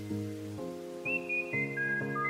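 Recorded music playing: a high, whistle-like melody with short slides over a chord accompaniment that changes about every half second.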